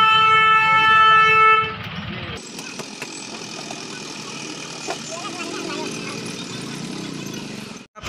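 A vehicle horn gives one loud, steady blast lasting under two seconds. After it comes a quieter background of bustle with faint voices.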